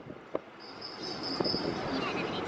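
A high, steady insect trill that starts a little over half a second in, over faint background noise with a few light ticks.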